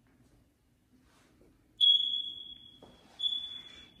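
Two high-pitched electronic beeps at one steady pitch, like a smoke-detector beeper: the first starts sharply about two seconds in and fades over about a second, the second comes about a second later and runs into the next words.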